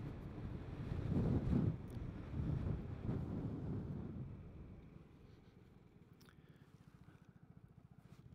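Vespa GTS 300 Super Sport scooter's single-cylinder engine running with wind and road rush, heard from a helmet-mounted mic. It dies down after about four seconds as the scooter slows to a stop.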